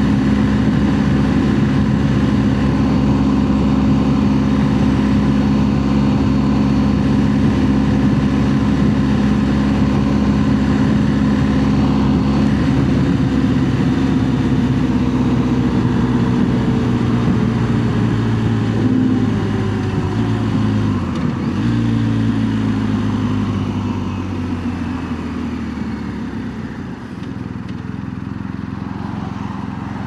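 A BMW R 1250 GS boxer-twin engine runs steadily at highway speed with wind noise. After about twelve seconds its pitch falls as the bike slows, with a brief break in the engine note about two-thirds through. It then runs lower and quieter near the end.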